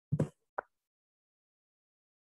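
Two short knocks in otherwise dead silence: a low thump, then a sharper click about half a second later.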